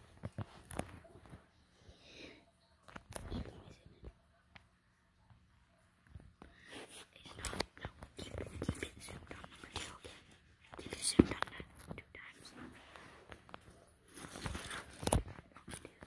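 Quiet, scattered handling noise: rustling and light clicks and knocks as a phone is moved about and toy cars are handled, coming in a few short spells and loudest about eleven seconds in.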